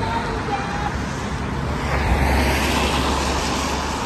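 Road traffic on a wet road: a vehicle going by, its engine rumble and tyre hiss swelling about two to three seconds in.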